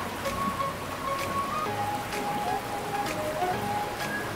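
Rushing river water, a steady hiss, under soft background music of a few long held notes.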